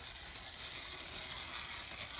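Playcraft model train locomotive running slowly around a loop of track, a steady mechanical sound from its small electric motor, gears and wheels.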